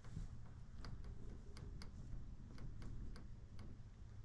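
Faint, irregular light clicks, about nine of them spread over three seconds, over a low steady hum, as fingers press and smooth soft modelling clay on a sculpted horse head.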